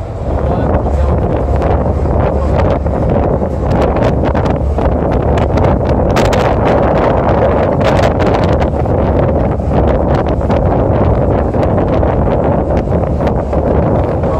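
Wind buffeting the microphone on the open upper deck of a moving bus, over the bus's low road rumble.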